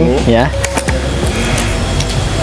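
A shot from a Predator Vground 2 PCP air rifle with an upgraded plenum and regulator: a sharp crack a little over half a second in, then a second click a fraction of a second later, over a steady rushing noise.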